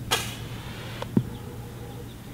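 A short burst of water spraying from a garden hose nozzle set to a narrow stream: a hiss that starts suddenly and fades within about half a second. About a second in there is a sharp click, then a short low knock.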